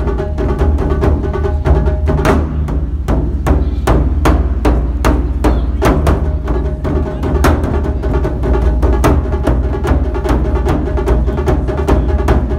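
Taiko drums beaten with sticks in a fast, steady rhythm: deep drum tones under dense, sharp stick strikes.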